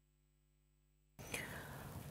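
Dead silence for about a second, then faint studio room noise with a soft intake of breath from the newsreader just before she begins to speak.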